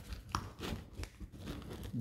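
Faint rustling and scraping as a Kydex insert wrapped in a hook-and-loop adapter is pushed down into a fabric magazine pouch lined with folded index cards, with a brief squeak shortly after it starts.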